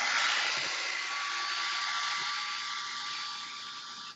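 Upright carpet extractor's vacuum motor running steadily as the machine is pushed across a soiled rug: a rushing hiss with a thin steady whine in it, easing off slightly toward the end.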